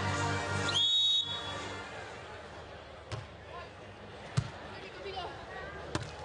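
Broadcast replay music that cuts off about a second in, just after a short rising tone. Then the open court, with three sharp slaps of hands striking a beach volleyball in a rally; the middle hit is the loudest.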